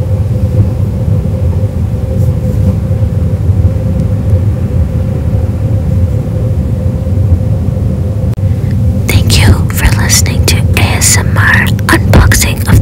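A steady low rumble with a faint steady hum underneath. About nine seconds in, whispering begins, crisp and breathy.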